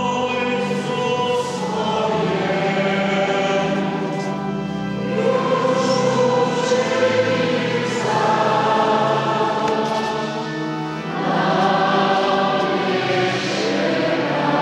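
Many voices singing together, a choir or congregation, in slow, long-held notes that change every few seconds, echoing in a large church.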